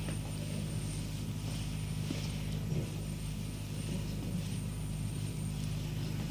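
Steady low hum and hiss of the recording's background noise, with a few faint indistinct sounds and no speech.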